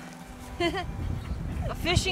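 A woman's voice in two short wordless exclamations, one about half a second in and one near the end, over a faint steady low hum.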